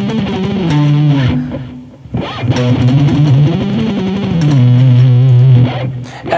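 Ibanez Universe seven-string electric guitar playing a fast descending B-minor lead run. The phrase breaks off briefly about two seconds in, then runs on and ends on a long held note.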